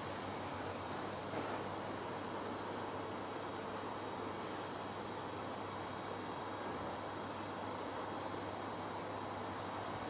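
Steady background noise: an even hiss with a faint low hum, without distinct handling sounds.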